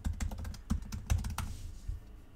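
Fast typing on a computer keyboard: a quick run of key clicks that stops about one and a half seconds in.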